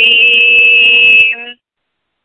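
A man chanting a Sanskrit hymn holds a syllable on one steady note for about a second and a half, then cuts off.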